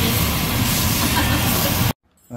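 Cuttlefish slices sizzling in a nonstick frying pan, a loud steady hiss that cuts off suddenly near the end.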